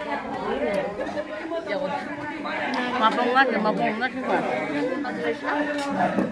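Chatter of several people talking at once, their voices overlapping.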